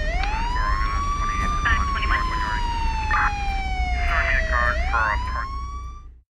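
Emergency-vehicle siren wailing over a deep, steady low rumble. Its pitch climbs for under two seconds, falls slowly for about three, then climbs again near the end.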